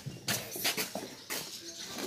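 A horse sniffing and mouthing at a hand through stall bars: a few short soft clicks and breathy snuffles.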